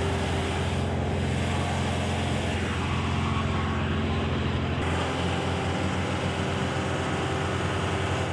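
Engine of an airport cargo loader running steadily, a constant low hum with a hiss over it.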